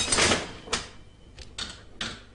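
Mechanical clattering and clicking from a coin-operated Victorian machine being tried out: a burst of clatter at the start, a sharp knock a little later, then two short clicks near the end.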